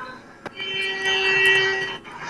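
A single long held note, steady in pitch and rich in overtones, lasting about a second and a half. It starts just after a faint click about half a second in.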